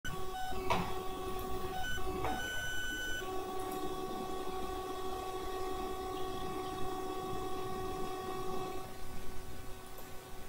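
A steady pitched mechanical hum with overtones over low background rumble, broken by two sharp clicks in the first few seconds. The hum thins out near the end.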